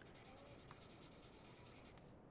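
Faint scratching of a marker colouring in boxes on a paper sheet, with one small tick about two-thirds of a second in.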